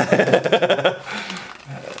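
A man laughing heartily, in quick pulses, trailing off near the end.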